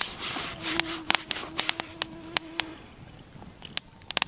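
A mosquito whining close by for about two seconds in a steady, even tone, with sharp clicks scattered around it.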